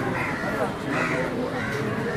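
Voices of players and spectators calling out around the court, with two louder calls standing out about a quarter of a second and a second in.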